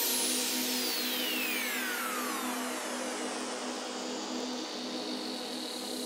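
A breakdown in electronic dance background music: a hiss-like noise sweep with several tones gliding down in pitch over about three seconds, over a held low tone, slowly fading.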